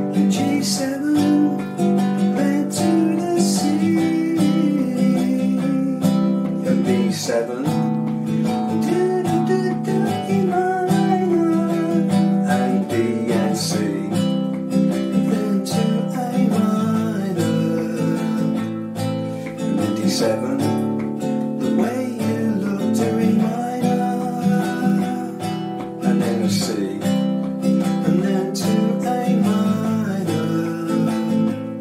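Nylon-string classical guitar strummed steadily through a pop chord progression (G, C, D, E minor, B7, A minor, D7), with a man's voice singing along.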